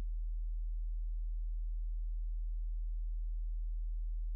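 A steady low hum: one deep, unchanging tone with nothing else over it.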